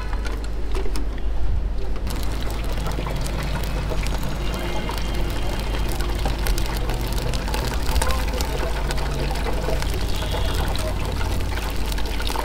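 Momos deep-frying in the basket of an electric deep fryer, the oil sizzling and crackling steadily over a low hum.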